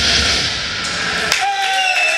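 Live death metal band's last chord, drums and cymbals crashing and ringing, cuts off about a second in, followed by shouts and cheering from the audience.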